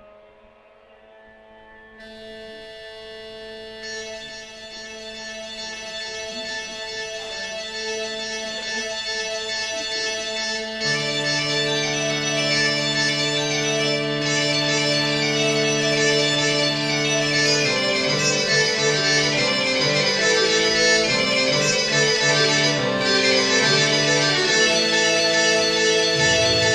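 Piano accordion playing a slow, held chord that swells gradually from silence like a drone. Low bass notes join about ten seconds in, and the notes above start to move more in the last several seconds.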